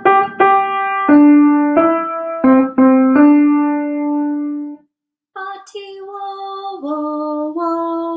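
A piano plays a short melody line of about seven notes, the last one held and dying away. After a brief silence, a woman sings the same line in held notes, 'bati wo wo wo Cameroon', as a model for learners to repeat.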